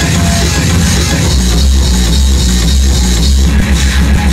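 Loud electronic dance music from a DJ set played over a club sound system, with a heavy, continuous bass.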